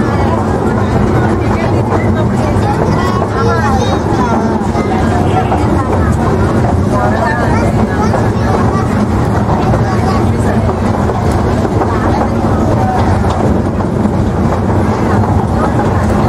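Miniature park tourist train running steadily, giving a continuous low rumble from its engine and wheels, with voices chattering over it.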